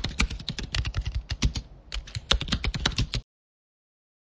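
Computer keyboard typing sound effect: a rapid, uneven run of keystroke clicks, with a brief gap about two seconds in. It stops abruptly a little after three seconds in.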